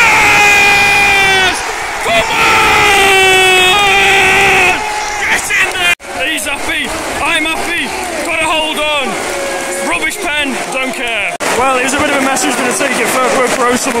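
Football crowd celebrating a goal, a penalty scored late on to go 2-1. There are two long held yells close to the microphone in the first five seconds, then a mass of voices shouting and cheering.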